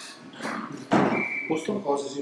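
Speech between question and answer: brief, indistinct voices near the end, with a short noisy burst about a second in.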